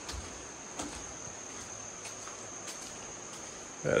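Insects keeping up a steady high-pitched trill over the even hiss of a running creek, with a few light footfalls on the bridge's wooden planks.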